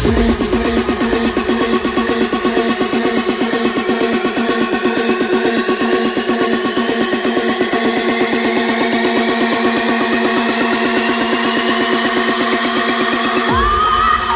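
Techno track in a breakdown. The kick and bass drop out, leaving a fast pulsing synth line with rising sweeps above it. The deep bass comes back in just before the end.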